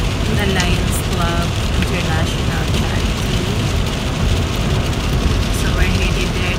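Steady road and engine noise inside the cabin of a moving SUV at highway speed, a loud low rumble of tyres and wind.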